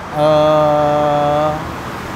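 A man's voice holding a long, flat hesitation sound, "eh", at one steady pitch for about a second and a half before trailing off.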